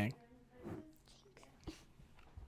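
Quiet room with a faint whispered or murmured voice about half a second in, and a single sharp click shortly before the end.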